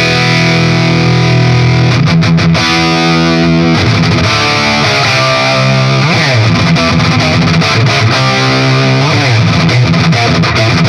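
Overdriven electric guitar through a Marshall 1959HW Super Lead plexi head and 4x12 cabinet, with both of the amp's channels driven at once through an A/B/Y switcher. Held distorted chords ring for the first few seconds, then shorter changing notes with a couple of sliding bends in the second half.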